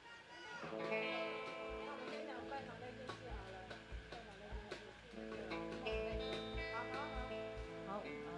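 Live band playing: ringing guitar chords come in about half a second in, with low thumps underneath. The chords ease off briefly around five seconds and then sound again.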